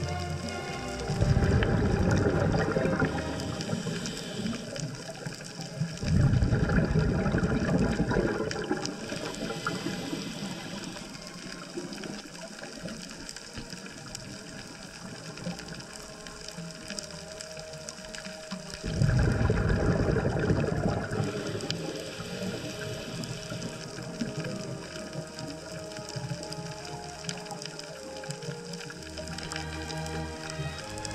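Scuba diver's exhaled bubbles rushing out of the regulator, recorded underwater, in three bursts of two to four seconds: about a second in, about six seconds in, and near the nineteenth second. Between the breaths a quieter underwater hiss carries on.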